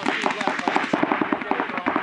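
Paintball markers firing in rapid strings, many sharp pops a second, with several guns going at once.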